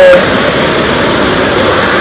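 Steady rushing and splashing of pool water, as a swimmer moves through the water close by. A voice is heard briefly at the very start.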